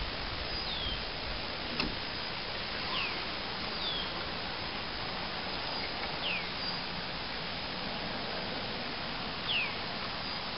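A bird calling repeatedly in short whistled notes that fall in pitch, every second to few seconds, over a steady outdoor hiss. There is one sharp click about two seconds in.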